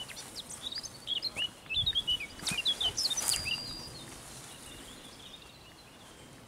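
A songbird singing a quick run of chirps and short whistled notes that dies away after about four seconds, with a couple of footsteps in the grass about halfway through.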